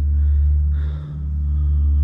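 A steady low rumble with a deep, even hum underneath.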